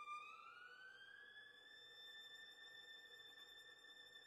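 Solo violin sliding up to a very high, very soft note over about a second, then holding it steady.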